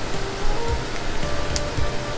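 Sliced onions, ginger and garlic frying in hot oil with whole cumin seeds just added: a steady sizzle, with faint music underneath.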